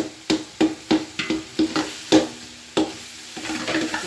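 A wooden spatula scraping and knocking against an aluminium pot as tomato masala is stirred while it fries, about three strokes a second with a faint sizzle under them. The strokes stop about three seconds in, leaving only the sizzle.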